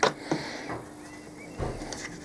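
Hand tightening the plastic star knobs on the T-bolts that lock an MDF router-table fence: a few light clicks, then a dull knock a little past halfway.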